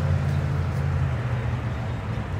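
Steady low rumble of a motor vehicle engine running, with a faint hiss over it.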